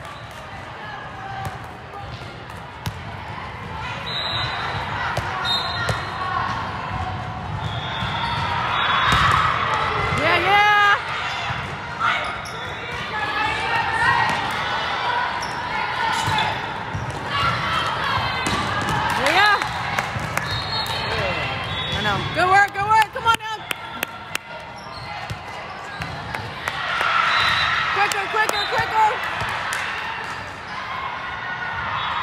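Indoor volleyball rally in a large, echoing hall: the ball being hit, with a cluster of sharp smacks a little past the middle, over a steady murmur of spectators. Players and spectators shout rising calls and cheers several times as the point is played out.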